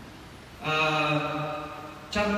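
A man singing a long held note, steady in pitch, that starts about half a second in and dies away shortly before the end, in a reverberant hall. A new sung phrase begins right after.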